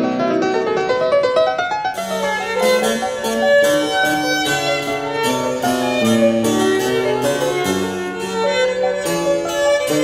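Harpsichord and violin playing classical music together. The violin's sustained melody runs throughout, and the harpsichord's quick plucked notes come in about two seconds in.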